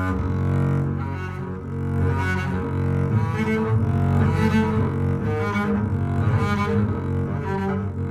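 Solo double bass played with the bow: a continuous run of bowed notes, swelling in a regular pulse about once a second.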